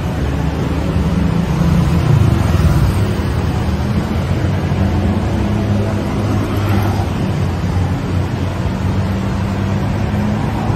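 City street traffic: vehicle engines running with a steady low hum over road noise, a little louder about two seconds in.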